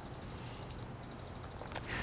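Quiet room tone with a steady low hum and a few faint handling sounds from a plastic syringe and needle cap, one small click near the end.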